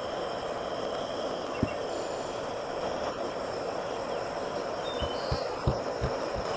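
Steady background hiss, with a soft low thump about a second and a half in and a few more near the end, as a moka pot is handled while its filter basket is filled with ground coffee.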